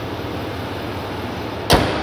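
6.6-liter Duramax L5P V8 diesel idling steadily under the open hood, then the hood is slammed shut near the end with one loud thud, after which the engine is much more muffled.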